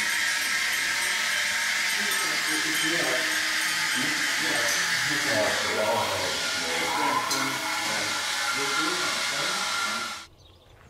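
A steady, loud hiss fills the room, with indistinct voices talking underneath it.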